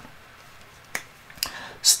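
Two sharp clicks about half a second apart from a whiteboard marker's cap being handled.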